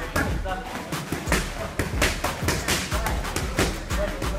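Boxing gloves striking focus mitts in a fast, irregular run of sharp smacks.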